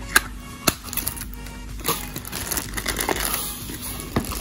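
Sharp plastic clicks and taps from a remote control being handled and set down in foam packing, two loud clicks close together in the first second, then softer scattered ones; faint background music underneath.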